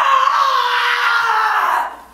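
A woman's long, loud scream that slowly falls in pitch and breaks off sharply just before the end.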